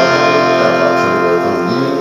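Electric guitar playing held, ringing chords along with a recorded band track, with one note sliding up near the end.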